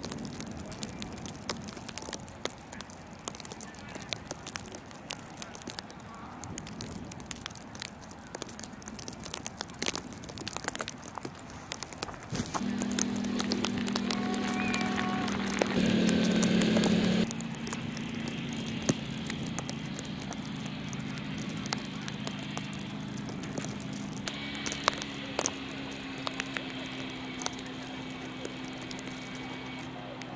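Quad bike engine running at a steady pitch, starting about twelve seconds in and loudest for a second or so a little later, over scattered faint clicks.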